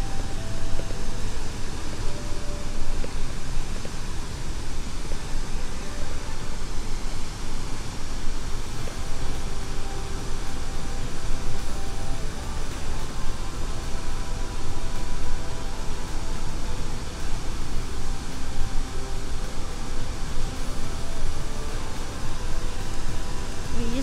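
Steady roar of a large waterfall, about 80 feet tall, plunging into its pool.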